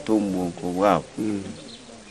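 A man's speech, trailing off into a quieter pause after about a second and a half.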